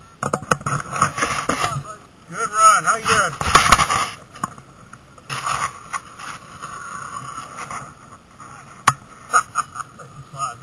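Wind and tyre noise from a gravity racer rolling down an asphalt road, recorded on board, loudest in the first four seconds, with a brief wavering squeal about two and a half seconds in and a sharp click near the end.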